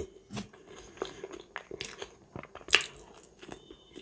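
A person chewing a mouthful of food up close: scattered small wet clicks and smacks, with one louder mouth noise a little under three seconds in.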